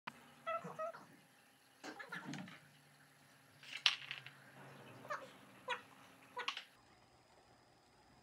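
Eight-week-old Queensland heeler puppies giving short, high whines and yips, about six separate calls spread over several seconds.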